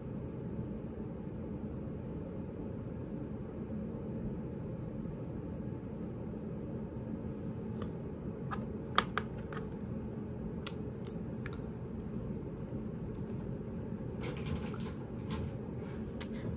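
Steady low room hum with scattered faint clicks and light taps from small makeup items being handled, such as a pen-style liquid eyeliner, with a quick cluster of clicks near the end.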